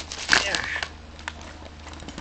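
Plastic toy packaging crinkling and clicking as foam darts are pulled out of it: a sharp click at the start, then a few lighter clicks.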